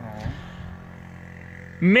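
A pause in a man's speech: a brief falling vocal sound at the start, then low steady background noise until he starts talking again near the end.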